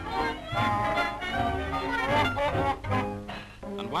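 Dance-band music accompanying a stage act, with held melody notes over a steady bass beat about twice a second; it thins out near the end.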